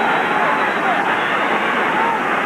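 Large crowd of spectators cheering steadily, a dense wash of many voices.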